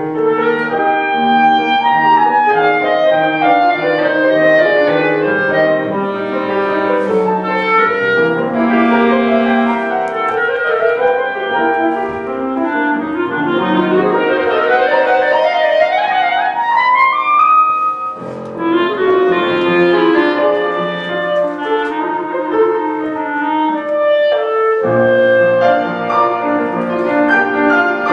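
Clarinet playing a melody over piano accompaniment, with a long rising run midway through.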